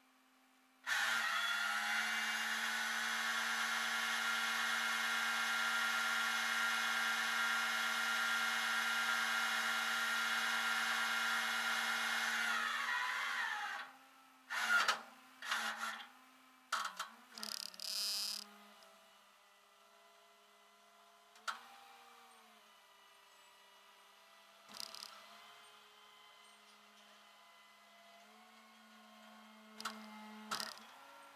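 Rollback tow truck's hydraulic winch running, a loud steady whine over the truck's engine for about twelve seconds, dropping in pitch as it stops while the chain is reeled up the bed. A few clanks and knocks follow over the engine's quieter steady hum.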